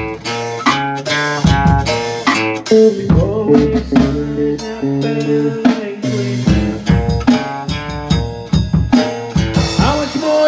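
A band playing an instrumental passage: two guitars strumming chords over a drum kit, with no singing.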